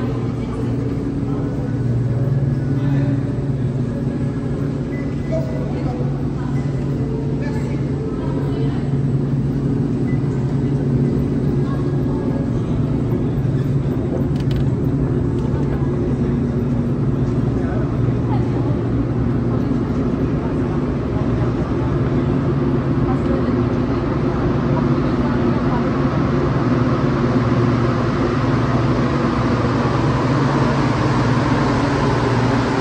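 Steady mechanical hum of a metro station's escalators and machinery. In the second half a rushing rumble builds as a rubber-tyred Montreal metro train approaches the platform.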